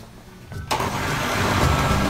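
Oster countertop blender starting up about two thirds of a second in and running steadily, its motor blending a jar of cream sauce.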